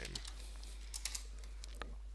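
Computer keyboard being typed on: scattered key clicks, with a quick run of them about a second in.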